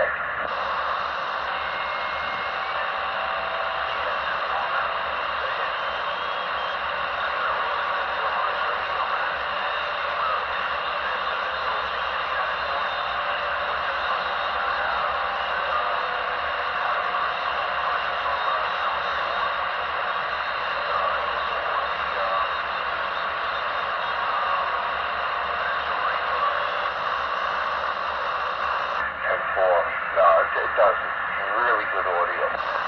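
CB radio receiver hissing with static over an open channel, a weak, unintelligible voice faintly under the noise; the hiss switches on just after the start and cuts off abruptly near the end.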